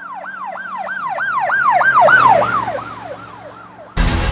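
Emergency vehicle siren in a fast yelp, about three sweeps a second, each falling in pitch, over a low steady drone. It grows louder to a peak about two seconds in, then fades.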